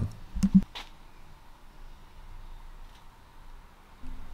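A few faint clicks and a brief low sound within the first second, then quiet room tone.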